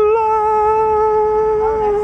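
A single long note with a voice-like quality, held at one steady pitch for nearly three seconds after a sudden start.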